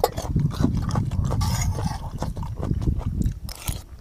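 A man chewing a mouthful of food, picked up close by a clip-on microphone as a run of low mouth noises and small clicks, fading near the end.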